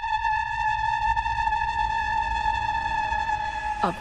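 Background music: a single high synthesizer note held steady over a low rumble, broken by a short spoken word just before the end.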